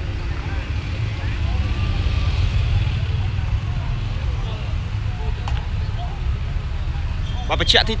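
Steady low rumble of road traffic, with cars and a pickup truck driving slowly past close by. A man's voice starts near the end.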